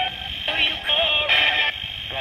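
Radio scanning through stations as a ghost box: short chopped snatches of broadcast singing and voices, each cut off within about half a second, with a thin, tinny radio sound.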